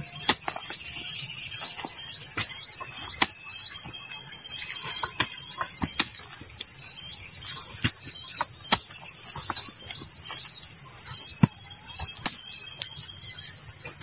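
A steel hoe chopping into and turning soil, a short strike every second or so, under a loud, steady, high-pitched insect chorus with a fast pulsing trill.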